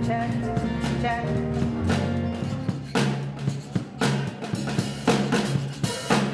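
Band playing rock music: sustained bass and chords, with drum kit hits coming in about three seconds in, roughly one a second.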